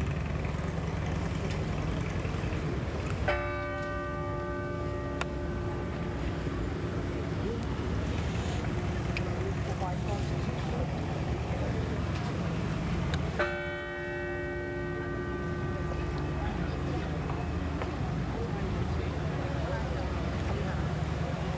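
Cathedral bell tolling slowly for a funeral, two strokes about ten seconds apart, each ringing on and fading. A steady low rumble runs underneath.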